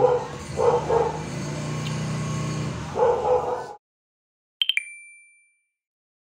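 A few short vocal sounds over a steady low hum cut off abruptly. About a second later a short, bright chime sound effect, with a couple of quick clicks at its start, rings and fades.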